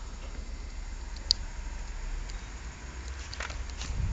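Low, steady outdoor background rumble in a snowy street, with a single sharp click about a second in.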